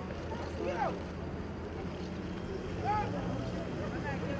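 Indistinct murmur of several people talking at a distance, with a voice rising in pitch about a second in and another about three seconds in, over a steady low hum.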